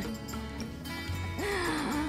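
Background music with a steady bass line. Near the end, a short straining vocal sound from a woman pulling cassava stems out of the ground.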